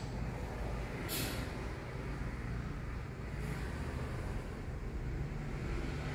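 Steady low rumble of outdoor background noise, with a short hiss about a second in.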